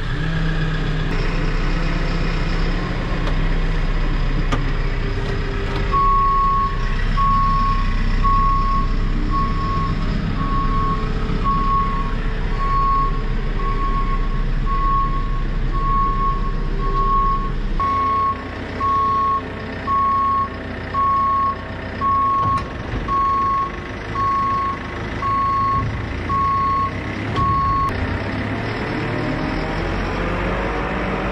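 JCB Super Agri 532-70 telehandler's diesel engine running as the machine moves off, with its reversing alarm beeping steadily from about six seconds in until near the end.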